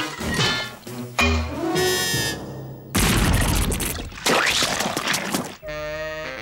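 Cartoon sound effects over the score as a mortar fires paint: a deep thump about a second in, then a long, loud noisy crash-and-splash from about three seconds in as the paint comes down. Music picks up again near the end.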